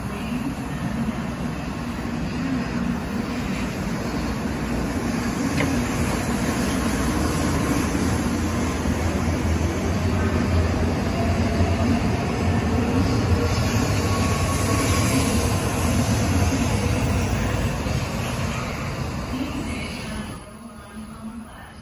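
N700-series Mizuho Shinkansen pulling out of the station and gathering speed past the platform: a steady rumble of wheels and running gear that grows louder as the cars stream by, then drops away near the end.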